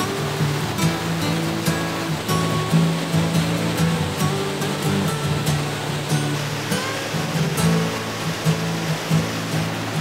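Background music with held notes and a beat, over the rushing noise of a creek and waterfall in flood.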